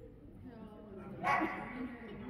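A dog gives a single loud, sharp bark just over a second in, echoing briefly in a large hall.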